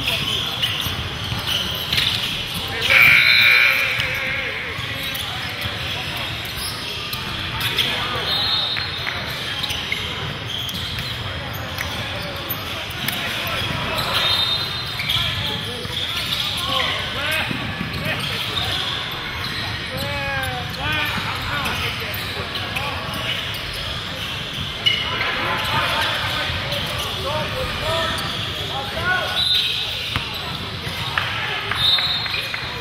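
Basketball game in a large echoing gym: a ball bouncing and being dribbled on the hardwood court, sneakers squeaking, and players and spectators talking in the background. A brief shrill tone about three seconds in is the loudest sound.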